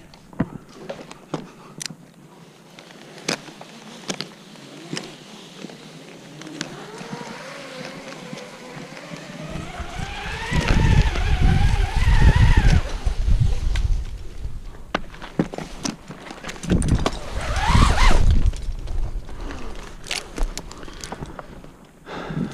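Climbing rope running through a Petzl ZigZag mechanical friction device during a rappel. It makes a whine that rises in pitch as the descent speeds up, with heavy rumbling and rubbing noise. A few sharp clicks come before it, and a second, shorter rising whine follows near the end.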